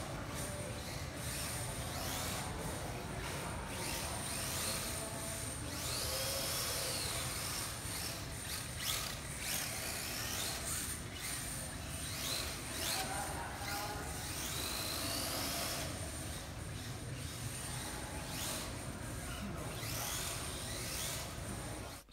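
Electric motors of 1/10 scale RC drift cars whining, the pitch rising and falling again and again as the cars throttle up and ease off through their drifts.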